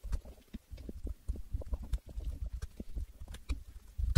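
Typing on a laptop keyboard: a quick, irregular run of key taps, with brief pauses between bursts.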